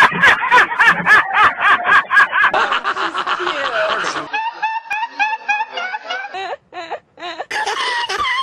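Hearty human laughter: a fast run of ha-ha bursts, then a different laugh taking over after about four seconds, broken by two brief gaps near the end.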